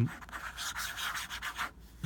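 Fine-nibbed fountain pen scratching across paper in quick scribbled strokes; the scratching stops near the end.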